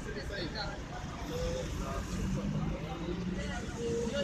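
Street traffic rumble with indistinct men's voices talking.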